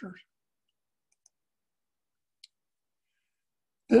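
Near silence broken by two faint single clicks about a second apart, from a computer mouse changing the slide. A man's voice starts at the very end.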